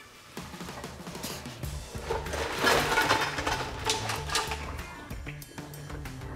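Hot cooking water and boiled stone crab claws poured from a pot into a steel colander in a stainless sink: a rush of splashing water, loudest in the middle, with the shells clattering, over background music.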